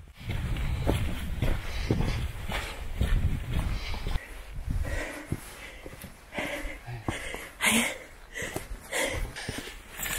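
Footsteps crunching and scuffing on a stony dirt trail, irregular steps with small clicks of stones underfoot. A low wind rumble on the microphone runs through the first four seconds or so.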